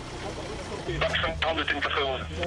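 A man's voice saying "okay", with a steady low hum underneath from about a second in.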